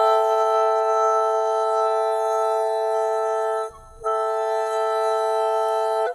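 A long held sung note through auto-tune, locked dead steady on one pitch. It breaks for a quick breath about three and a half seconds in, then picks up on the same note and stops.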